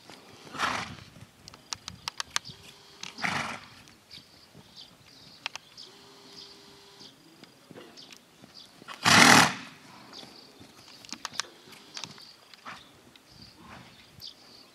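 A stallion blows out hard through its nostrils three times as it moves on the lunge line: about half a second in, about three seconds in, and loudest about nine seconds in. Light scattered clicks and steps fall in between.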